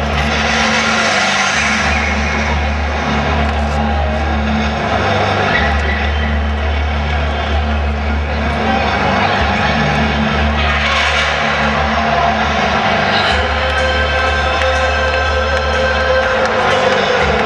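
Live rock music heard in a stadium: a loud, sustained low drone with a bass line changing notes every second or two underneath, and crowd noise spread over the top.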